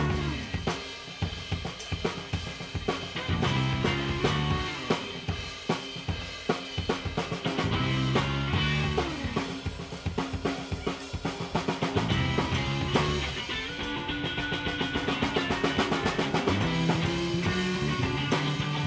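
Live rock band playing an instrumental passage, the drum kit's snare and bass drum strikes to the fore over electric bass and electric guitar.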